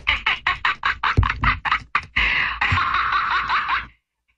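A novelty laughing pen's sound chip playing a recorded woman's laugh through its tiny speaker, thin and tinny: a quick run of 'ha-ha' bursts, about six a second, then a longer drawn-out laugh that stops just before the end.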